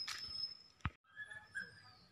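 Faint outdoor ambience with high, thin bird chirps. A sharp click just before the sound drops out briefly at a cut about a second in.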